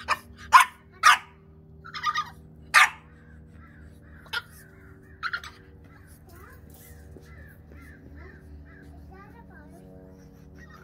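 Four-month-old French bulldog puppy barking: about six short, sharp barks over the first five seconds.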